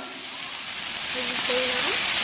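Shrimp sizzling in oil on a hot Blackstone flat-top griddle, a steady hiss that grows louder as they heat.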